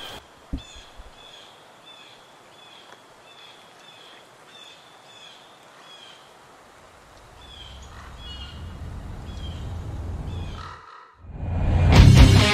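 Forest ambience opening a music video: a bird calls in short, slightly falling chirps about twice a second over a faint hiss. From the middle, a low rumble swells, breaks off, and the band's electric guitar comes in just before the end.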